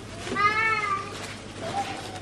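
A single high-pitched drawn-out call that rises and then falls, lasting under a second.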